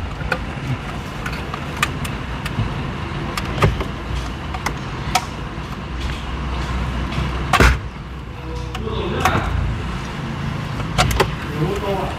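Sharp plastic and metal clicks and knocks as a Hyundai Tucson's factory head unit is worked out of the dashboard and its wiring connectors are unclipped. The loudest knock comes about seven and a half seconds in, over a steady low hum.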